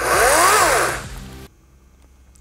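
Ryobi chainsaw given a short rev: its whine rises in pitch and winds back down, dying away within about a second and a half.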